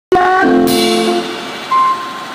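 Electronic keyboard holding a sustained chord of steady organ-like notes that fades after about a second, then a single steady high note near the end.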